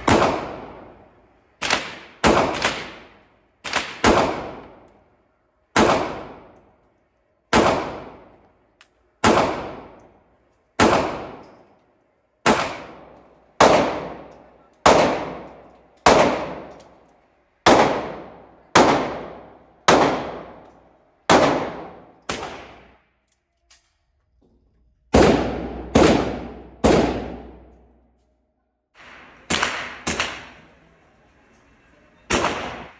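Handgun shots fired one at a time on an indoor shooting range, about twenty in all, mostly about a second apart with a few quicker doubles. Each report rings on in the room before the next.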